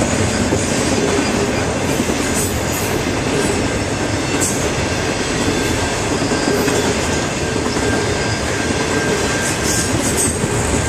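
Intermodal freight train's cars rolling past, a loud, steady noise of steel wheels on rail. A faint, thin, high wheel squeal joins in for the second half.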